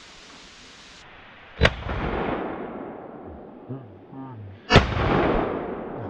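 Two shotgun shots about three seconds apart, fired at an incoming pheasant, each followed by a rolling echo that dies away over a second or more.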